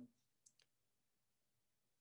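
Near silence, with a faint click or two about half a second in.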